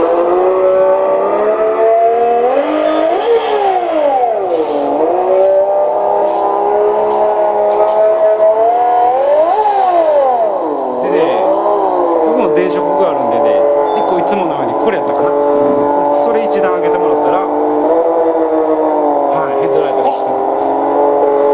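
RC drift car's electronic engine-sound unit playing a simulated engine through its small onboard speaker: a steady idle with throttle blips, the pitch sweeping up and back down a few seconds in and again around halfway.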